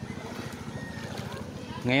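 Small boat engine running steadily with a rapid, even pulse, under faint crowd voices.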